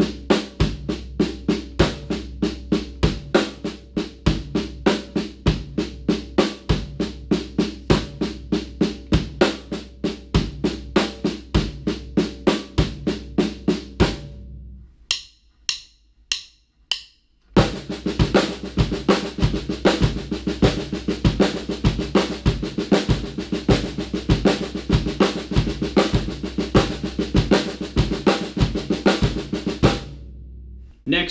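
Drum kit: a continuous 16th-note snare pattern in a five-stroke sticking (right left left right right) over a steady quarter-note bass drum. About halfway through the playing stops for a few seconds, broken only by a handful of evenly spaced clicks, like drumsticks clicked together to count back in. Then the pattern resumes and runs on.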